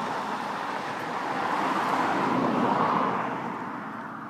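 A car passing by: road noise that swells over about three seconds and then fades away.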